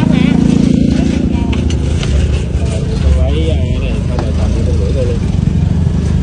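Road traffic: a vehicle engine drones low and steady for the first couple of seconds, then fades into a continuous low traffic rumble.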